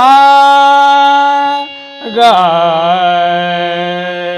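A voice singing sargam syllables with a harmonium in an alankara exercise: two long held notes, the second lower than the first, each starting with a brief waver in pitch before settling. There is a short break just before the second note.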